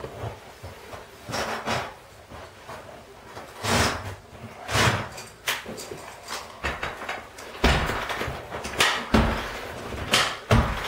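Several irregular thumps and clunks, with short rustles between them, as a lever-action carpet stretcher (Kneeless) is set into the carpet and worked along the wall; the loudest knocks come in the second half.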